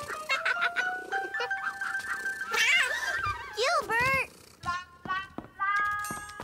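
Children's cartoon background music with long held notes, and a cartoon cat meowing in the middle. Musical notes pick up again near the end.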